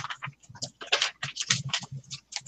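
Computer keyboard typing: a quick, irregular run of keystroke clicks.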